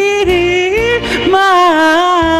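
A woman singing into a microphone over musical accompaniment, holding long notes with a slight waver. Her pitch dips and climbs back about a second in.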